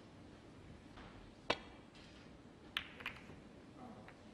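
Snooker shot: the cue tip strikes the cue ball with one sharp click, and a little over a second later the cue ball clicks into the pack of reds, with a second ball-on-ball click just after.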